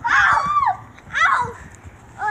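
Two short, high-pitched wordless shouts from children, each sliding down in pitch: one right at the start and a second just after a second in.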